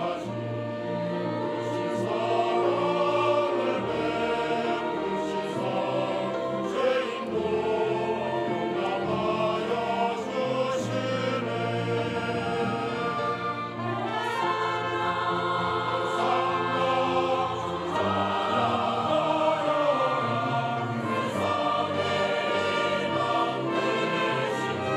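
Large mixed church choir singing a Korean hymn with orchestral accompaniment of strings.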